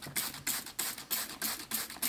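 Handheld spray bottle squeezed rapidly, about five short sprays of water mist a second, each a quick hiss, wetting worm bedding to make it damp.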